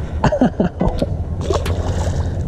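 A smallmouth bass dropped back into a creek with a splash late on, over a low steady rumble of moving water.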